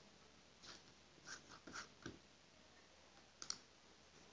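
Near silence broken by a few faint, scattered clicks, the sharpest a quick double click about three and a half seconds in.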